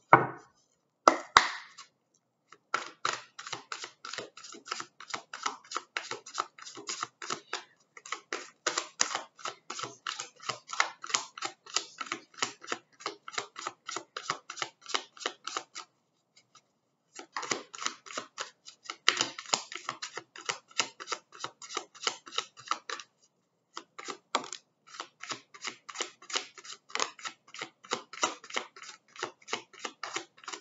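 A deck of oracle cards shuffled by hand: a couple of sharp knocks, then fast, even clicks of the cards, about five a second, in long runs that pause twice briefly.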